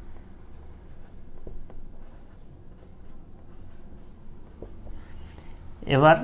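Marker pen writing figures on a white surface: faint scratching strokes with a few light taps.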